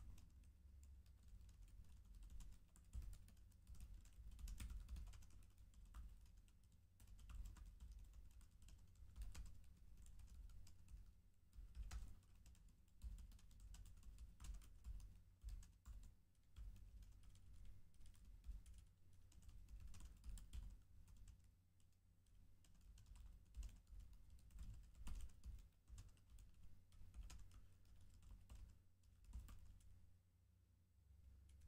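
Faint typing on a computer keyboard: quick runs of key clicks with short pauses between them.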